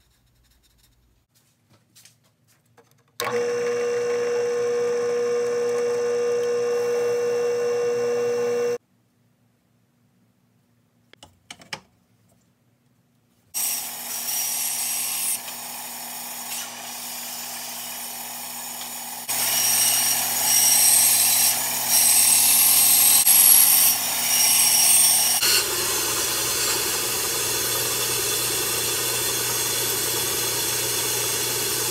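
ShopMaster benchtop bandsaw running in two separate stretches with a silent gap between: a steady motor hum first, then the saw again from about halfway, its blade cutting wood. The cutting is loudest and scratchiest in a stretch of several seconds before settling back to a steady run.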